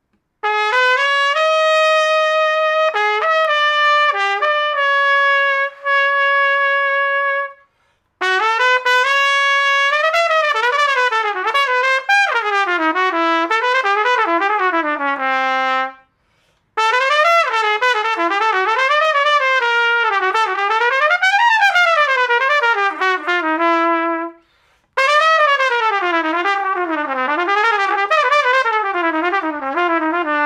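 Silver-plated Carol Brass Andrea Giuffredi model trumpet played solo in four phrases with three short pauses between them. The first phrase is held notes; the rest are quick runs up and down.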